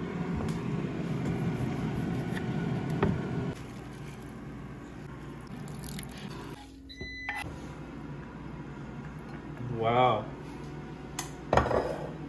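Kitchen handling sounds over a steady hum: a lime squeezed in a hand-held citrus press over a pot of cooked rice, then chopped cilantro scraped off a wooden cutting board into the pot. A short wavering voice sound comes near the ten-second mark.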